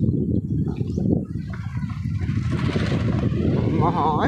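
Motorcycle running over a rough dirt track, its engine and wind on the microphone making a dense, steady low rumble. A voice-like wavering sound comes in near the end.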